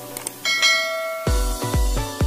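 A bell-ding notification sound effect rings out over electronic background music, preceded by a couple of light clicks. About a second and a quarter in, the music drops into a heavy kick-drum beat, roughly two beats a second.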